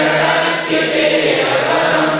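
Many voices chanting Prakrit verses (gathas) of a Jain scripture aloud in unison, a steady group recitation with no break.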